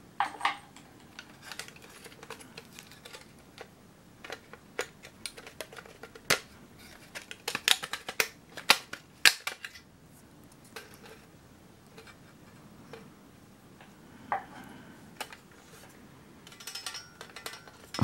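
Light metallic clicks and taps of a small tinplate toy bus body being handled and worked apart by hand. They come scattered, busiest between about six and ten seconds in.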